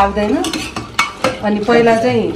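Metal spoon stirring mutton curry in an aluminium pressure cooker, clinking and scraping against the pot's inside with several sharp knocks.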